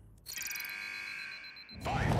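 Electronic sound effect from a tokusatsu episode soundtrack: a steady, ringing, chime-like synthesized tone lasting about a second and a half, coming between a voiced "Ready" call and a "Fight!" call that begins near the end.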